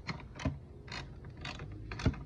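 Ratchet wrench clicking in about five short strokes, roughly two a second, as a nut is tightened on a car battery cable terminal.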